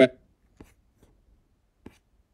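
A last spoken syllable cut off at the start, then quiet room tone with a few faint clicks and one sharper click near the end, from someone working a computer.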